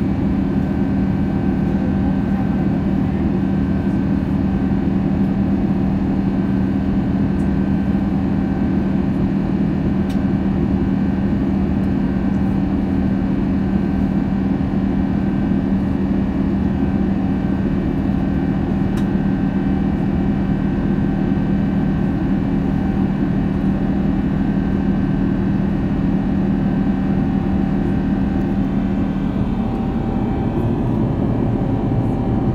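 Steady cabin drone of an Airbus A330neo airliner in flight, its Rolls-Royce Trent 7000 turbofans giving a loud, even rumble with a strong low hum, heard from a seat by the wing.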